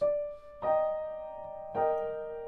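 Piano played with the right hand alone: three chords struck one after another, at the start, just over half a second in and near the end, each left to ring. The hand is moving through chord positions on the black keys, the inversion technique the etude practises.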